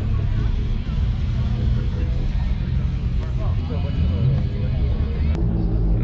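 Outdoor crowd ambience: a steady low rumble with faint voices in the background, and a single click about five seconds in.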